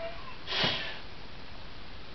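A man's single short sniff through the nose about half a second in, followed by steady low room hiss.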